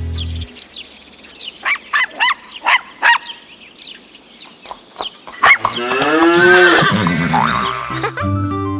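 Cartoon animal sound effects. The music stops about half a second in, then comes a quick run of short chirping calls. Near the end there is one longer, louder call that rises and falls in pitch.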